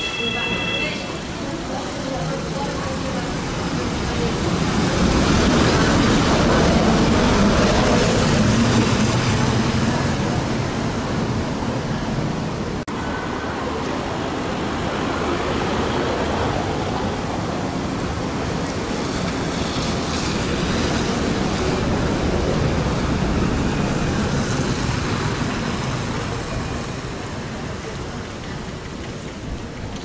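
Hess Swisstrolley 5 trolleybuses passing on wet cobblestones: tyre hiss and running noise that swell as a bus goes by, about five seconds in and again around twenty seconds.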